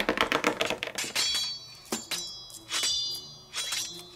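Clicking sound effects: a quick rattle of clicks in the first second, then a few separate sharp clicks, each followed by a short high ringing.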